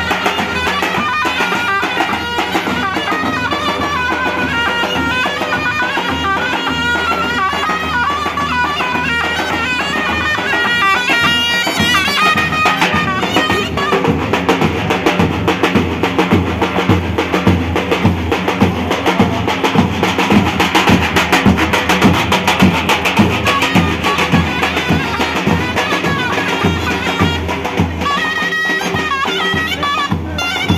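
Turkish folk music on davul and zurna: a shrill, reedy zurna melody over steady davul bass-drum beats. The drumming grows louder about halfway through.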